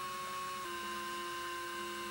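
Vertical mini mill's spindle motor running at a steady speed, a steady whine with the small end mill turning freely above the steel plate. The pitch shifts slightly about two-thirds of a second in.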